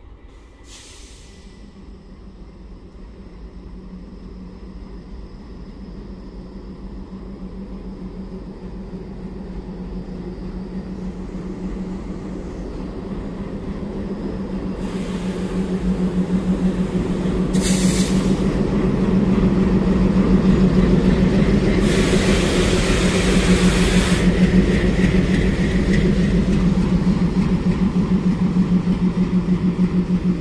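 WDG-3A diesel locomotive with its ALCO 16-cylinder engine running into the station and passing close by, its low steady engine note growing much louder as it nears. Several short bursts of hiss come from the air brakes in the second half as the train slows.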